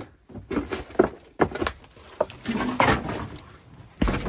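Irregular knocks, thuds and rustling from footsteps across the floor of a derelict camper as things are bumped and moved.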